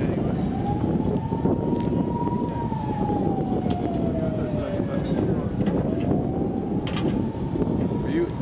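An emergency vehicle siren in a slow wail: one long rise and fall in pitch, then it starts to rise again near the end. Underneath is a loud, steady outdoor rush of noise.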